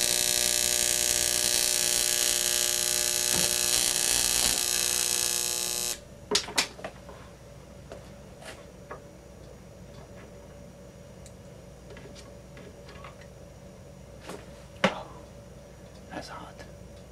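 12,000-volt neon sign transformer and its high-voltage arc buzzing steadily through a Rodin coil, cutting off suddenly about six seconds in as the power is switched off. A few sharp clicks of handling follow, the loudest about a second before the end.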